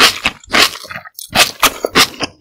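Thin cold buckwheat noodles slurped up from chopsticks in a series of short, loud, wet sucks, about two a second, with a brief pause about a second in.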